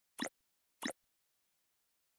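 Two short pop sound effects about two-thirds of a second apart, from a channel end-card animation.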